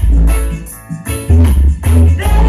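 Reggae music played loud through a large sound system, with heavy bass and guitar. The bass drops out for a moment about halfway through and then comes back in.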